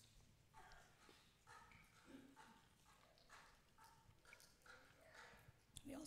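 Near silence: quiet room tone with faint, indistinct short sounds.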